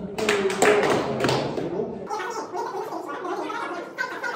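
Fast-forwarded audio of voices sped up into garbled chatter, mixed with quick taps and thuds of feet on a studio floor. About two seconds in, the low end drops out abruptly.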